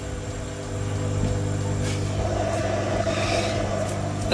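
Steady electrical buzzing hum from an Omtech 60 W CO₂ laser engraver being test-fired, its poorly insulated high-voltage lead arcing to the machine's metal body.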